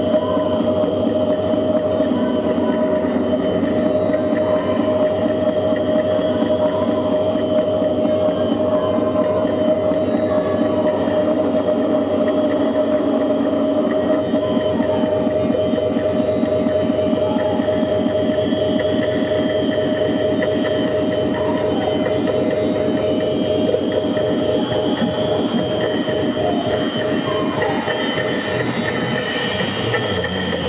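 Live electronic noise music played on laptops and a MIDI keyboard: a steady droning tone under a dense layered texture, with scattered short blips above it. A fast, even pulsing joins about halfway through.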